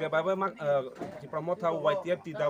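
A man speaking in a steady stream of talk.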